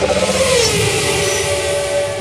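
A car's engine with its pitch falling as it goes by, over a loud hiss.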